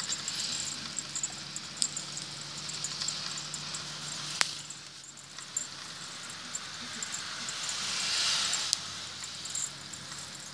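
Noise inside a moving vehicle's cab: a steady low engine hum under a rushing hiss of wind and tyres that grows louder near the end, with one sharp click about four seconds in.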